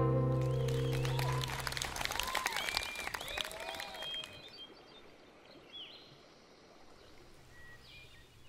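The last chord of a live acoustic string band rings out and dies away, followed by audience applause with a few short rising-and-falling calls over it. The applause thins out and fades after about four seconds.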